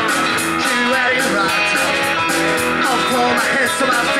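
Live rock and roll band playing an instrumental passage: electric guitars, bass guitar and drums over a steady beat.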